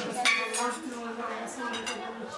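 Plates, glasses and cutlery clinking during a meal, a few sharp clinks, the loudest just after the start.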